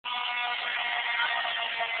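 Fire truck engine running steadily, a constant mechanical drone with several held tones over a rushing noise.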